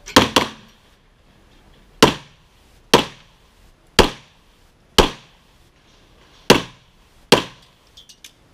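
Eight pistol shots: a quick pair right at the start, then six single shots spaced about a second apart, each sharp and loud with a short echoing tail.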